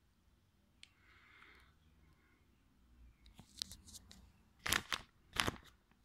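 Clear plastic crinkling and clicking as it is handled close to the microphone: a few light clicks, then two short, loud crackles less than a second apart near the end.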